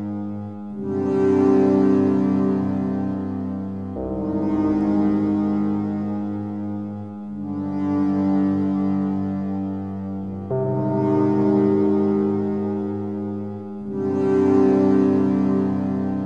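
Electronic music: slow, sustained synthesizer pad chords with no beat, each swelling and changing to the next about every three seconds.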